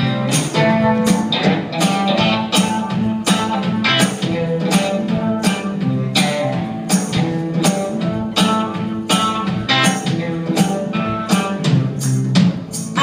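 Live band playing an instrumental passage: electric guitar over keyboard and a steady, evenly spaced drumbeat.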